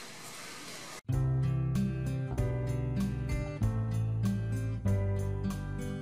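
Faint hiss for about a second, then instrumental background music cuts in suddenly, with a run of separate plucked-sounding notes over a steady bass.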